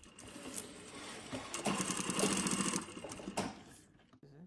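Brother industrial sewing machine stitching a cloth face mask: it runs quietly at first, then stitches faster and louder for about two seconds before stopping near the end.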